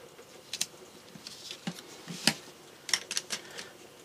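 Cardstock panels and a foam adhesive piece being handled and pressed on a desk: scattered light taps and paper rustles, the sharpest tap a little over two seconds in.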